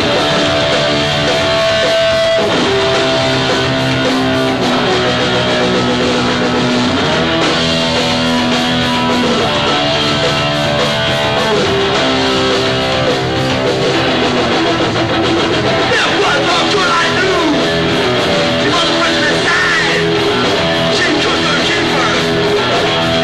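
Hardcore punk band playing live: distorted electric guitar and bass holding long, slow notes over drums, with wavering high notes from about 16 seconds in.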